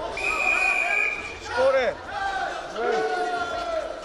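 A referee's whistle blast, one steady high note about a second long, stopping the wrestling bout, followed by shouting voices.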